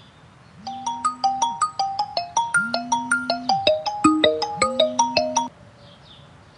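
Mobile phone ringtone: a quick melody of short bright notes over a low held note that returns three times, starting about half a second in. It cuts off abruptly after about five seconds as the call is answered.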